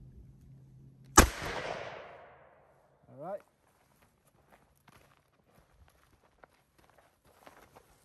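A single .357 Magnum shot from a Chiapa Rhino revolver fired into a ceramic rifle plate a few feet away. The crack comes about a second in and its echo dies away over about a second. Faint footsteps follow.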